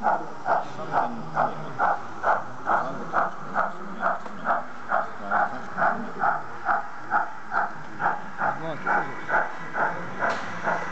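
Steady steam-exhaust chuffing with hiss from a sound-fitted model of LMS Black Five 4-6-0 no. 45379, running at an even pace of a little over two beats a second as it hauls a goods train.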